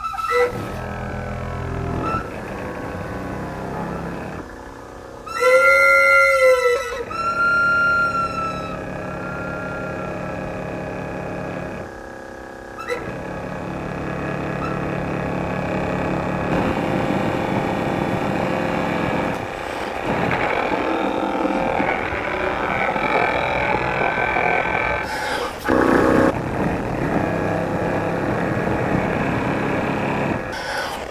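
Honkpipe, a homemade wind instrument of long flexible tubing, being blown. It gives a couple of clear pitched notes, the first bending up and back down, then settles into a long, rough, buzzing drone of many overlapping tones that swells near the end.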